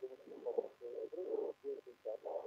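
Muffled, hard-to-make-out speech squeezed into a narrow, boxy midrange band, like a voice over a poor telephone line.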